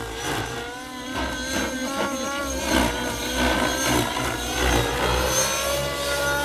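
GAUI NX7 radio-controlled helicopter in 3D flight: a steady drivetrain whine over a low rotor thrum, its pitch wavering up and down as the helicopter manoeuvres.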